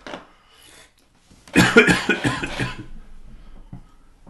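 A man coughing: one loud, rough bout of several quick coughs about halfway through, lasting about a second.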